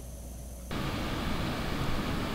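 Steady outdoor background noise, an even hiss-like rush, which starts suddenly about two-thirds of a second in after a quieter stretch.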